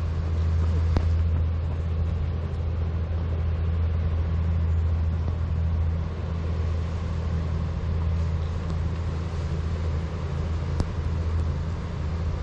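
Steady low rumble of wind and rolling noise on a bicycle-mounted camera while riding a gravel path, with two brief sharp clicks, about a second in and near the end.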